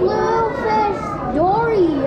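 Children's voices, high-pitched and gliding up and down in pitch, without clear words.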